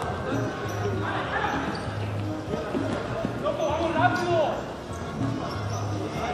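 Sports-hall ambience at an indoor futsal game: music with a repeating bass line plays in the hall while the ball thuds on the wooden court, and a distant voice calls out about four seconds in.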